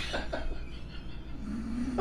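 Soft laughter from a man and a woman, fading out within the first second, then a short low hummed voice sound near the end.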